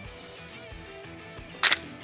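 Quiet background music with sustained tones, broken about 1.7 s in by one short, sharp plastic click as the LEGO truck's cargo box is pulled loose from its chassis.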